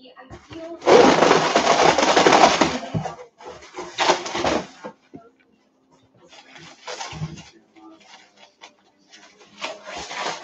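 Cardboard and plastic packaging being handled and pulled from a shipping box. A long stretch of rustling and crinkling starts about a second in, with shorter bursts near the middle and near the end.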